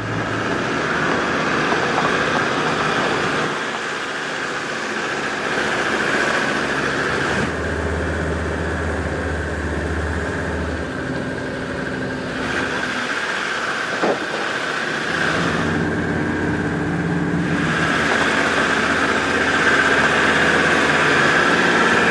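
Engine of an off-road vehicle running under load as it drives up a rough gravel mountain track, heard from inside the cab. The engine note changes several times as the throttle and gearing shift, with a single sharp click about 14 seconds in.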